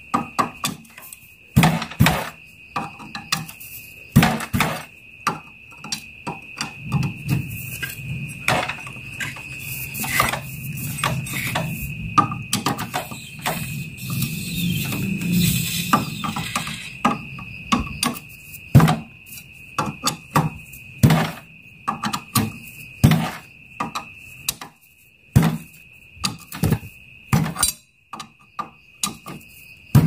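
Irregular sharp metal clicks and clinks, about one or two a second, of a wrench working the pressure-plate bolts of a four-stroke motorcycle's wet clutch as they are tightened. A steady high trill runs underneath.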